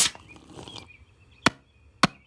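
Hammer blows on roof shingles: three sharp knocks, the second about a second and a half after the first and the third half a second after that.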